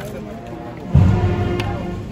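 Procession brass band playing a Salvadoran funeral march, with a loud low stroke and held low chord coming in about a second in.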